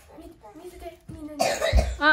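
Low voices talking in a small room, then a loud, harsh cough about a second and a half in.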